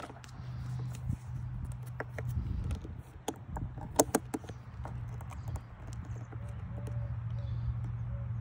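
Handling noise: scattered light clicks and taps as multimeter test probes and leads are moved onto the battery terminals, over a steady low hum.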